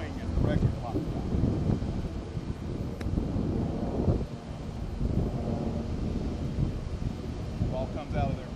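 Wind buffeting the microphone, with one sharp click about three seconds in as a golf club strikes the ball on a short, high flop shot from the grass.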